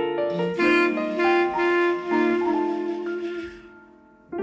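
Jazz clarinet playing a slow melodic ballad phrase over soft piano accompaniment; the phrase dies away to a quiet held note near the end.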